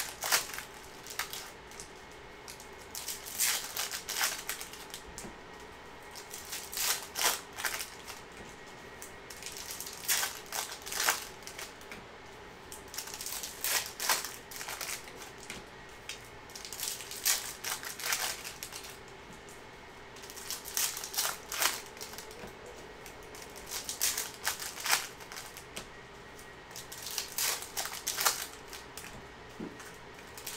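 Hockey trading cards being handled: a foil pack wrapper torn open, then cards flipped and set down on stacks, making short clusters of papery clicks and snaps about every three to four seconds.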